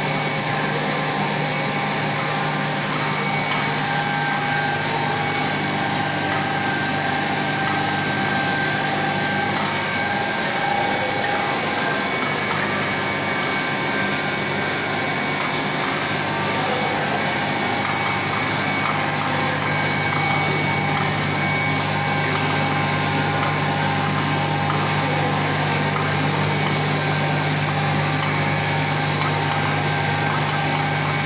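Steel tube mill running as steel strip feeds through its forming rolls: a steady mechanical drone with a low hum and several steady whining tones over it.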